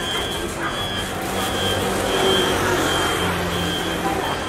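Street traffic: a high-pitched electronic beeper sounds in a steady on-off pattern, a little faster than once a second, over the low steady hum of an idling vehicle engine.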